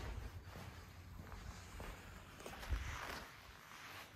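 Faint footsteps of a person walking, with a soft low thump nearly three seconds in.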